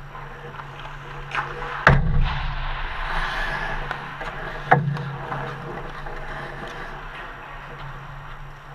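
Ice hockey rink sounds: a sharp knock about two seconds in, the loudest, and another near the five-second mark, from puck and sticks around the goal. Between them comes a hiss of skates scraping the ice, over a steady low hum.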